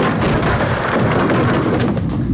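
Heavy wheels of cheese and wooden shelving crashing down in one long, dense crash made of many thuds and knocks, with dramatic music underneath. The crash stops at the very end, leaving only the music.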